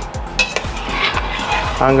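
A metal ladle stirs thin, warm cream in a stainless steel pot, scraping and clinking against the pot, with one sharp clink about half a second in. A voice starts near the end.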